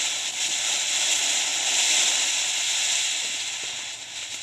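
Ground fountain firework spraying sparks with a steady hiss that eases off slightly near the end.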